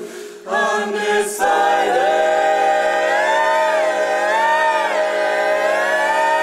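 Mixed men's and women's a cappella barbershop ensemble of eight voices singing. There is a brief break at the start, then a long sustained chord with an upper voice moving up and down over it.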